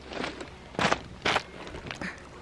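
Footsteps on a shore of loose pebbles, three steps, the second and third the loudest.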